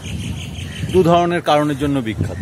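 Steady high-pitched chirring of insects, with a man's voice starting over it about a second in.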